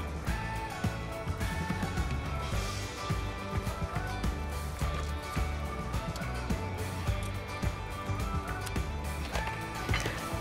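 Background music with a steady beat and a melody.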